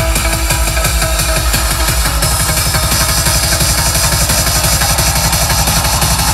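Electronic dance music with heavy bass played loud through a Digital Designs Redline 506 subwoofer in a small ported enclosure tuned to 40 Hz. The bass comes in rapid pulses, getting faster about two seconds in.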